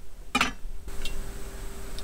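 A dinner plate set down on the counter with a single short clink about half a second in, followed by a faint steady hum.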